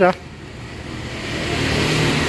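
A rushing noise that swells steadily louder after a short spoken goodbye.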